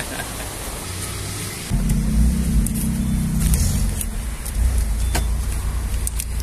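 Steady traffic and street noise, then, about two seconds in, a car engine's low, even running rumble sets in abruptly, heard from inside the car, with a few light clicks.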